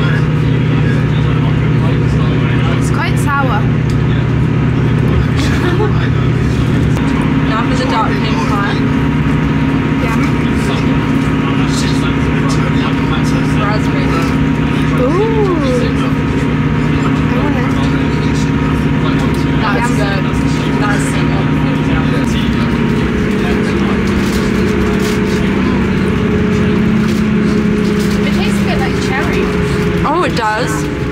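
A train running, heard inside the passenger carriage: a steady low hum over rushing noise, whose pitch changes about seven seconds in and again about two-thirds of the way through.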